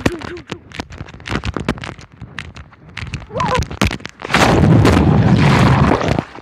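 Knocks and rubbing on a handheld phone's microphone, then, about four and a half seconds in, a loud rushing splash lasting over a second as the phone plunges into lake water with a jumper.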